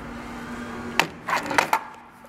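Wooden boards knocking against the paper cutter's table as they are handled and set down: one sharp knock about a second in, then a quick run of wooden clacks.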